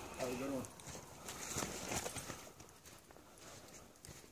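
Faint, irregular footsteps on a sandy dirt trail, dying away toward the end, after a short laugh at the very start.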